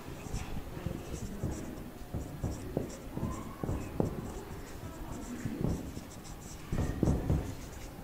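Marker pen writing on a whiteboard: a run of short, irregular strokes and faint squeaks as a sentence is written out. There is a louder low thump about seven seconds in.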